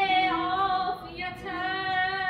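A woman singing Persian classical vocal (avaz) in Abu Ata: a held note with a wavering, ornamented turn, a short break about a second in, then another long held note.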